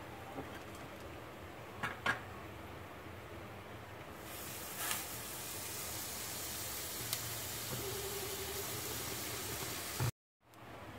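A couple of light metal clicks from a spatula against the pan, then, from about four seconds in, a faint steady sizzle as a buttered bread slice fries on a hot iron tawa.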